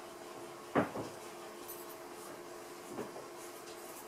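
Two knocks of something hard being set down or bumped: a sharp one about a second in with a quick rebound, and a softer one near the end, over a steady low hum.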